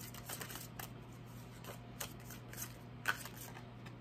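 Tarot cards being shuffled and handled in the hand: a run of short papery clicks and snaps, the sharpest about three seconds in, over a faint steady low hum.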